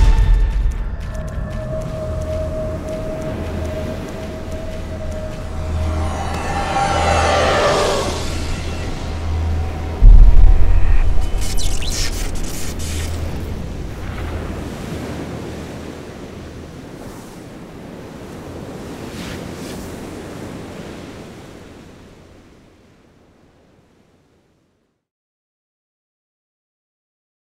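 Cinematic trailer sound design under a logo reveal: a low pulsing drone, a rising whoosh about six to eight seconds in, then a sudden heavy boom about ten seconds in that rings on and slowly dies away.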